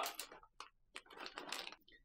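Faint chewing of a cookie, with a few small clicks and a short soft patch of noise about a second in.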